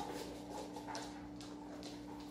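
Dogs' claws clicking on a hardwood floor as they walk about: a few faint ticks over a steady low hum.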